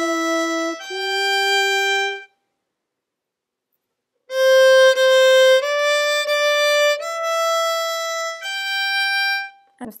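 Solo violin playing single bowed notes slowly, one at a time. First come two notes, the second higher. After a gap of about two seconds come four more, each higher than the last.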